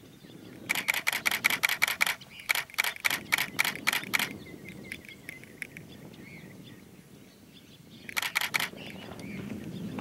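A camera shutter firing in rapid bursts of sharp clicks, about seven a second: two long bursts in the first four seconds, then a short burst about eight seconds in.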